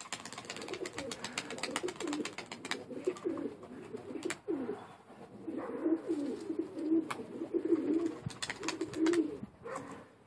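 Domestic pigeons cooing over and over in low, wavering coos, most densely in the second half. Scattered sharp clicks come in the first few seconds.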